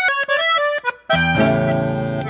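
Button accordion opening a chamamé tune with a quick run of short, detached melody notes, then a full sustained chord with bass notes entering about a second in, a classical guitar accompanying.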